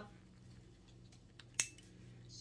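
Quiet room tone broken by one sharp click about one and a half seconds in, with a fainter tick just before it.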